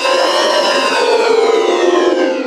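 An electronically distorted logo jingle: a loud, sustained, siren-like mass of tones whose pitch arches slowly up and then back down.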